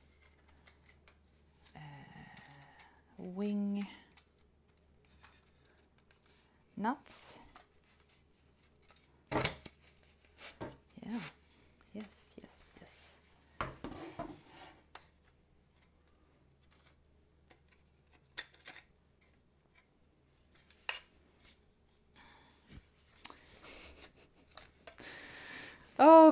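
Scattered clicks, knocks and light scrapes of a folding wooden studio easel being handled and adjusted by hand, its metal wing nuts and bolts being turned. A few short murmured vocal sounds come in between.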